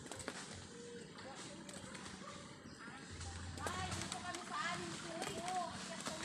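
Faint, indistinct voices of people talking, coming in about halfway through, with scattered light knocks in the background.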